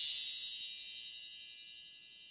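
A high, shimmering chime sound effect ringing out and fading away.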